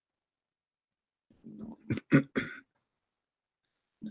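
A person clearing their throat about a second and a half in: a short low rasp and then three quick coughs.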